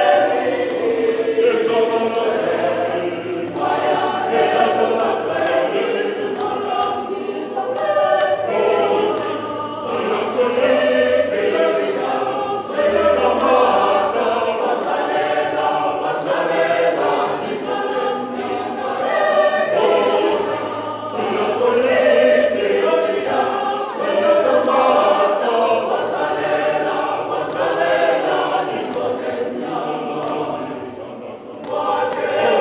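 Mixed-voice choir singing a South African song a cappella in several parts, with hand claps marking the beat.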